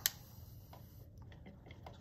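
Magnetic stirrer being switched on under a foam-cup calorimeter, giving a sharp click at the start and then a few faint, irregular ticks as its stir bar starts spinning.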